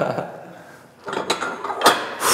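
Rubber-coated iron weight plates clanking against each other and the machine's metal loading post as they are handled, with a few sharp knocks from about a second in, the loudest near the end.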